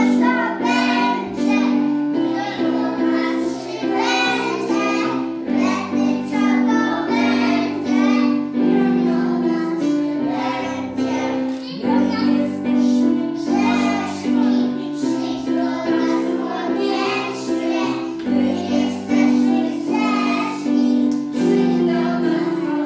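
A group of young children singing a song together over instrumental music.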